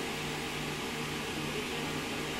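Steady room tone: an even hiss with a low hum that comes and goes in short stretches, like a fan or air-conditioning unit running.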